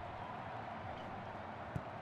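Steady, low stadium crowd noise from a football broadcast, with one faint short knock near the end.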